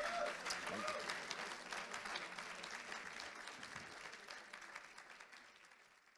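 Audience applauding, with a voice or two calling out near the start. The clapping fades steadily away to nothing by the end.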